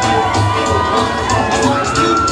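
Loud dance music with a steady bass beat, mixed with a crowd cheering and shouting.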